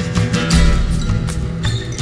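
Steel-string acoustic guitar playing a steady rhythm of strummed chords over ringing bass notes.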